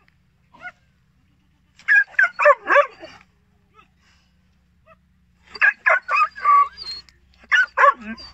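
Kohati Gultair male dog barking in three quick runs of short, high barks: about four barks some two seconds in, four or five around six seconds, and two near the end.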